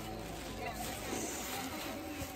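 Indistinct voices of people talking in the background, with no single loud sound.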